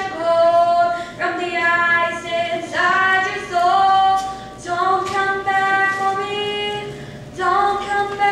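A girl singing solo into a stage microphone, sustained notes in phrases of one to two seconds with short breaths between them.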